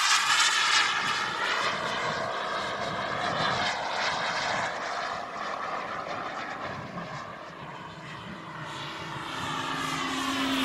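I-Jet Black Mamba 140 turbine of a large RC model jet flying overhead. Its whine sweeps down in pitch as it passes in the first couple of seconds, fades to its quietest about eight seconds in, then builds again as the jet comes back around.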